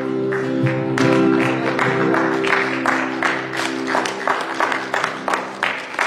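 Live worship music: an acoustic guitar strumming over sustained electric keyboard chords. The held keyboard chord fades out about two-thirds of the way in, leaving the steady rhythmic strums of the guitar.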